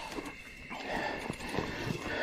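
Mountain bike and rider tumbling into dry brush in a crash: scattered knocks and rattles of the bike with rustling and scuffing of branches.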